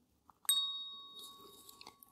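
A single bright, bell-like ding about half a second in, its clear high tones ringing on and fading away over about a second and a half.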